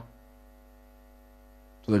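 Steady, faint electrical mains hum from the microphone and sound system, made of several constant tones. A man's voice comes in near the end.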